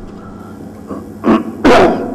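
A man coughs twice: a short cough about a second in, then a louder one near the end.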